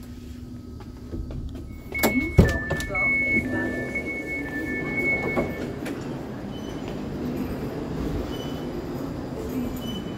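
Door warning signal on a double-deck electric train, an alternating two-tone electronic beeping that sounds for about four seconds, with a sharp knock near its start. Low platform murmur runs underneath.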